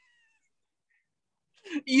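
Dead silence of a noise-gated video-call line for most of the time, after a short fading tail of a voice; about a second and a half in, a high-pitched laughing voice breaks in and grows loud.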